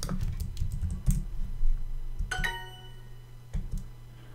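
Typing on a computer keyboard, a quick run of key clicks, followed about two and a half seconds in by a short bright chime of several tones fading out together: the language-learning app's sound for a checked answer. Two more clicks come near the end.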